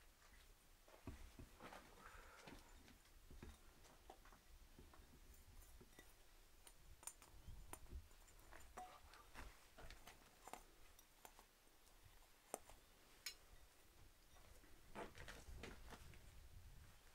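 Faint, scattered clinks and knocks of fired salt-glazed stoneware pots being lifted out of a kiln and handled, over near silence.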